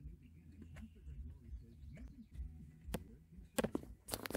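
Faint sound from a 2007 Dodge Nitro's factory FM radio while it seeks through stations. There is a sharp click about three seconds in and a few more just before the end, from the steering-wheel radio switch being worked.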